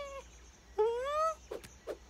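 Animated character's wordless voice: a short note, then about a second in a rising, questioning call, followed by two brief chirps near the end.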